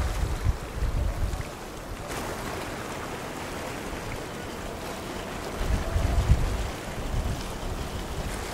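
Wind buffeting the microphone in two gusts of low rumble, one in the first second or so and a stronger one about six seconds in, over a steady hiss of wind and choppy water.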